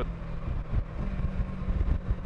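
Kawasaki Versys 650's parallel-twin engine running steadily under way, under a heavy low rumble of wind on the microphone.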